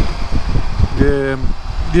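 Steady low rumble of wind buffeting and road noise on a helmet microphone, from a BMW K1600GT motorcycle cruising at highway speed.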